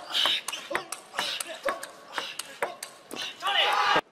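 Table tennis rally: the plastic ball clicks sharply off bats and table at about four hits a second, with voices in the background. A loud shout comes near the end as the point is won.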